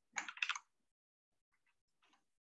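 A short, quick run of clicking taps at a computer, like keystrokes, in the first half-second, then a faint tick or two.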